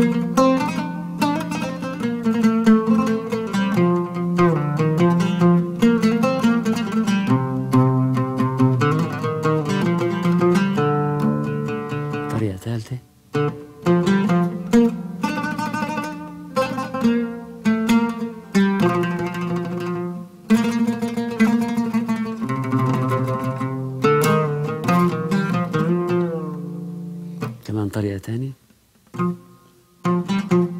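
Solo Arabic oud, plucked with a pick, playing a hymn melody dressed with ornamented runs of quick notes, an embellished variation on the tune. The playing pauses briefly about thirteen seconds in and again near the end.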